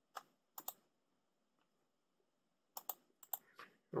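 Sharp clicks from a computer mouse and keyboard: three in the first second, then a quick cluster of four or five near the end.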